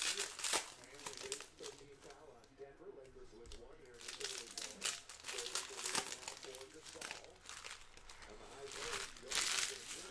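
Foil wrappers of trading-card packs crinkling in short, irregular bursts as they are handled and opened by hand.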